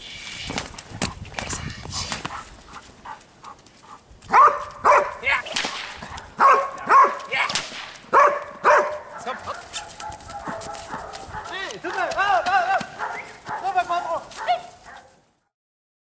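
A dog barking repeatedly in loud, short barks, starting about four seconds in, with higher bending calls near the end, then cutting off abruptly.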